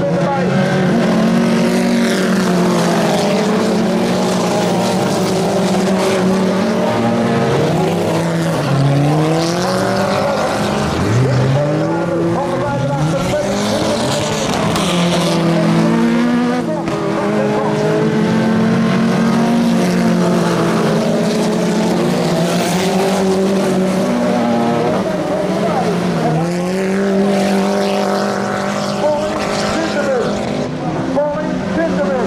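Several autocross cars' engines racing together on a dirt track, loud and continuous. The revs rise and fall over and over as the cars accelerate, shift and back off for the corners.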